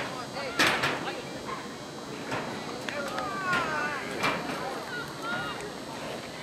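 Scattered shouts and calls from players and spectators carrying across an open field, with two sharp knocks, one just after the start and another past the middle.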